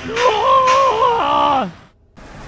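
An effects-processed cartoon voice holding one long wavering vocal note that steps and slides downward near the end, then cuts off.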